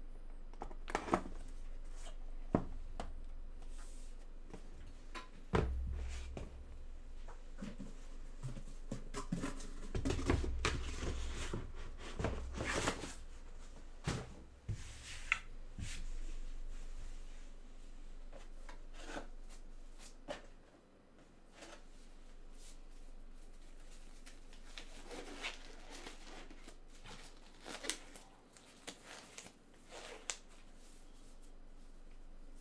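Hands handling a trading-card hobby box on a table: scattered rustles, taps and knocks, with a few dull handling thumps. Busiest in the first half, then sparser clicks.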